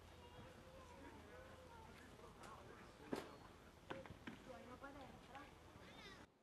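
Faint, distant voices talking across an open training pitch, with a sharp knock about three seconds in and a few smaller knocks after it.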